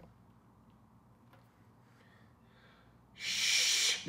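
Near silence, then near the end a man's long, breathy hiss of under a second, a shush or a blown-out breath.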